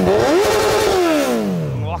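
Honda CB1000R's inline-four engine revved with a throttle blip: the pitch climbs for about half a second, then falls steadily as the revs drop back toward idle.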